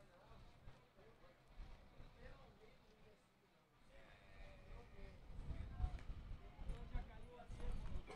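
Faint, distant voices of players calling out across an open football pitch. A low rumble comes in about five seconds in and is the loudest thing near the end.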